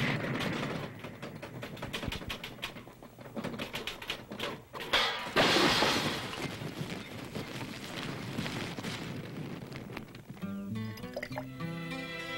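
Cartoon chase sound effects: a dense run of rapid clicks and rattles, with a loud noisy crash about five seconds in. Soft melodic music enters near the end.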